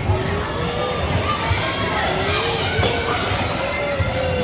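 Indoor basketball game on a hardwood court: shoes squeaking on the floor as players scramble for the ball, a couple of sharp thuds, and shouting voices of players and spectators.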